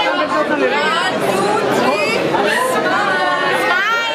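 A crowd of children's voices chattering at once, many overlapping high-pitched voices and no single clear speaker.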